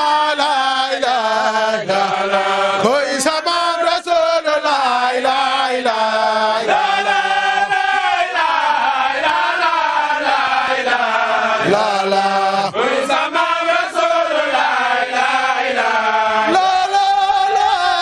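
A crowd of men chanting an Islamic devotional chant (a Sufi zikr) together in unison, one continuous line of many voices rising and falling in pitch.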